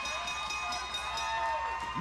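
Wrestling ring bell struck rapidly, about five strokes a second, to signal the end of the match after the pinfall; the strikes stop about two-thirds of the way in and the bell rings on.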